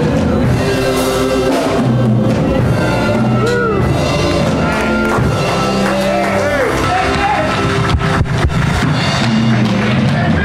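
Gospel music from a church band playing out the end of a choir song: held chords with a single voice singing and calling out over them. A few sharp clicks come about eight seconds in.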